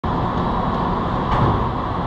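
Steady engine drone of heavy construction machinery running, with a slight swell about a second and a half in.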